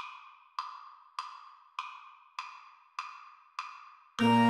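Metronome click track keeping the beat at about 100 beats a minute: seven evenly spaced, sharp wood-block-like clicks, each ringing briefly, while the band rests.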